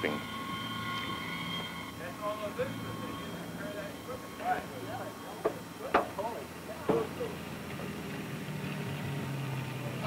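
Flight-line background noise: a high steady whine that fades over the first two seconds, a low engine hum underneath, faint distant voices, and a couple of sharp knocks about six and seven seconds in.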